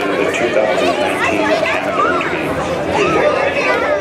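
A group of children chattering and calling out excitedly, many voices overlapping at once.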